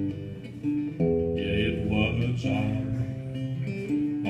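Acoustic guitar strummed in a short instrumental passage between sung lines of a folk song, the chords changing every second or so.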